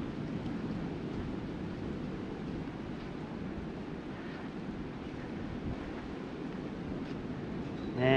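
Steady wind noise on the microphone over the wash of ocean surf.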